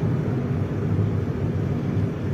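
Steady low rumble of a vehicle in motion, engine and tyre noise heard from on board as it drives along a road.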